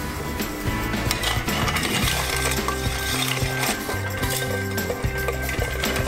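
Ice clinking in a stainless-steel mixing tin as a cocktail is stirred with a bar spoon: a steady run of light, irregular clinks, over background music.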